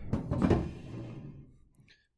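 Rustle and scrape of a fire alarm control panel's enclosure being lifted out of its cardboard box and crumpled paper packing, with a knock or two, loudest about half a second in and then fading away.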